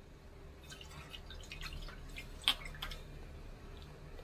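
Vinegar added from a plastic measuring spoon to a pot of sugar syrup and stirred with a silicone spatula: a quick run of small drips and splashes, with one sharper tap about two and a half seconds in.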